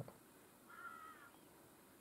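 A single faint bird call a little under a second in, lasting about half a second, in near silence.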